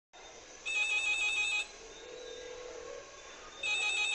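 Telephone ringing in the song's intro: a ring of about a second with a fast trill, then a second ring starting near the end, over a faint hiss.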